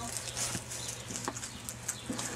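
Faint rustling and a few soft scrapes as a turtle crawls through dry straw, over a low steady hum.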